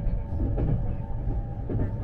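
JR East E257-series limited express train running at speed, heard inside the passenger car: a steady low rumble with faint steady tones above it.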